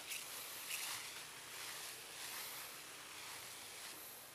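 Hand-held 3-liter pump pressure sprayer misting liquid onto string bean vines: a faint hiss from the nozzle that swells a few times.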